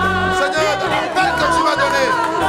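Worship music: sustained bass notes that shift every half second or so, under voices singing with a wavering, drawn-out pitch.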